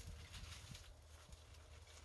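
Near silence: faint soft crackles and light knocks of hands pulling apart a large white-spined aloe clump, over a low steady rumble.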